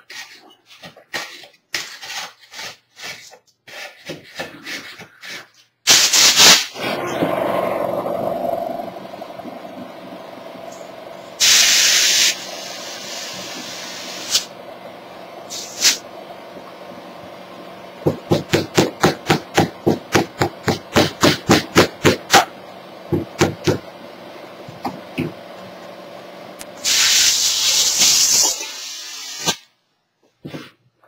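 Compressed air from a hand-held blow nozzle hissing in bursts while it is worked between a plaster casting and its mold to break them apart, over a steady motor hum. The first few seconds hold light scraping and ticking. About eighteen seconds in comes a quick run of pulses, about four a second.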